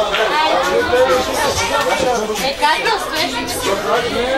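Several people talking at once: overlapping conversation and chatter.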